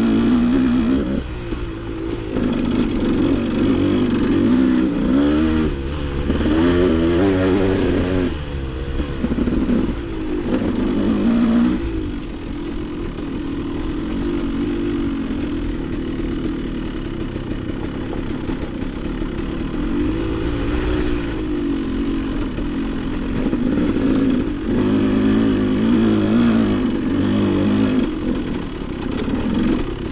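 Dirt bike engine running under the rider, revving up and down with the throttle over and over, its pitch climbing and dropping with each swell.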